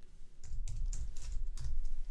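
Computer keyboard being typed on: a quick run of about half a dozen keystrokes entering a short command.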